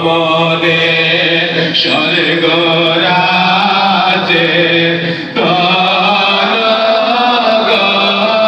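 A man's voice singing a Bengali Sufi devotional song (sama) into a microphone, unaccompanied, in long held notes that move slowly up and down; there is a short break for breath a little after five seconds in.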